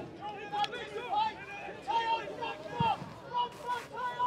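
Distant shouts and calls of voices from the pitch and the crowd at a football match, short and scattered, with one dull thud a little before the three-second mark.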